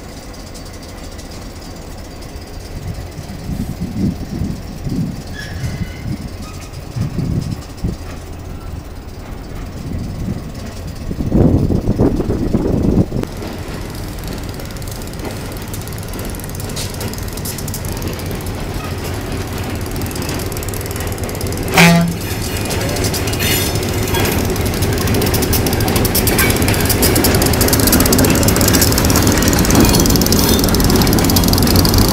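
EMD SW8 switcher's two-stroke V8 diesel running as it hauls a cut of empty gondola cars, with rail wheel noise, growing louder as the train comes close and passes. A brief, loud, pitched burst sounds about two-thirds of the way through.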